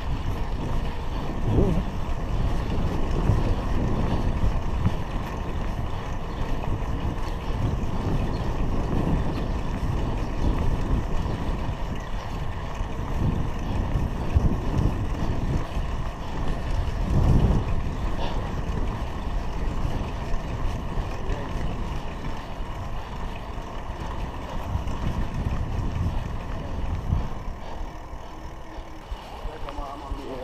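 Wind buffeting a handlebar-mounted GoPro's microphone while riding a bicycle, a steady low rumble that swells in gusts.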